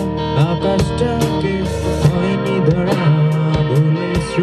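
A rock band playing live: a guitar lead line with bending notes over bass guitar and a drum kit with regular cymbal and drum hits.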